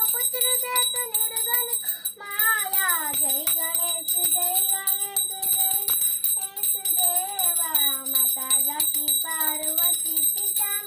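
A small brass hand bell (puja ghanti) rung continuously during an aarti, its high ring going on without a break, under a child's voice singing the aarti tune.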